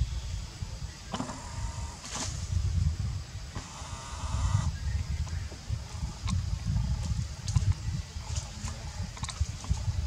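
A baby macaque gives two short cries, one about a second in and a longer wavering one about four seconds in, over a steady low rumble. Scattered light clicks run through.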